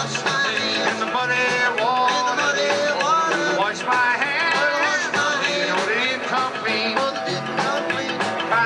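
Live rock and roll band playing an upbeat rhythm-and-blues number, with a lead line bending in pitch over bass and drums.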